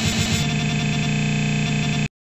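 Band music breaks off about half a second in into a steady, glitchy electronic buzz, a computer-crash sound effect like stuck, looping audio. It cuts off suddenly at the end.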